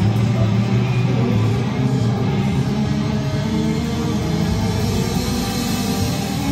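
Live rock band playing loud: electric guitars and bass hold low, sustained notes that change every half second or so, with no vocal line.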